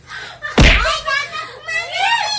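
One loud thump about half a second in, followed by excited voices and a woman laughing.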